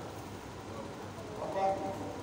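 A man's voice through a microphone and PA, pausing between phrases, with one short word about one and a half seconds in over a low steady background hum.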